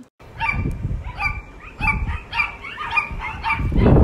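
A dog whining and yipping in a quick series of short high calls, about two or three a second, with wind buffeting the microphone, which grows louder near the end.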